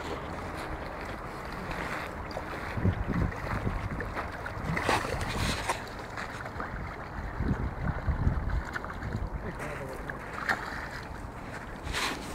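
Wind buffeting a phone's microphone in uneven gusts, with a few short crunches from steps on a gravel bank.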